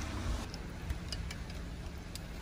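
Steady low outdoor background noise with a few faint light clicks.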